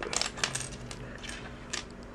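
Small plastic building-brick pieces clicking as they are set down on a wooden tabletop: a quick cluster of light clicks in the first half second, then a few single clicks later.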